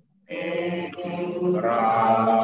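A group of voices chanting together in unison on long held notes. They begin just after a brief silence, and near the end the pitch steps up and the chant grows louder. The sound comes through video-call audio.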